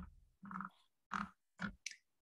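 A person's voice making three short, faint wordless hums or grunts, spaced about half a second apart. A brief hiss like a breath comes near the end.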